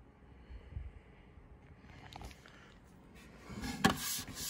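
Quiet room tone with a couple of faint soft bumps. Near the end, handling noise rises as the handheld camera is moved, with one sharp click.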